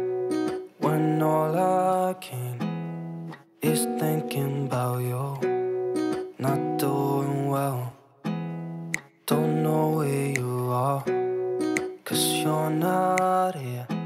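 Background music led by a strummed acoustic guitar, broken several times by sudden short gaps where it cuts out and comes back.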